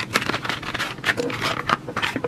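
Cardboard pencil box being opened and handled, with wooden pencils taken out and laid down: a quick, irregular run of small rustles, scrapes and light clicks.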